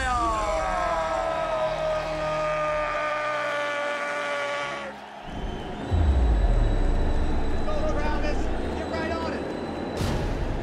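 A man's long, drawn-out shout that falls in pitch and then holds for about five seconds over a noisy arena background. About six seconds in, a sudden deep boom and rumble is the loudest sound.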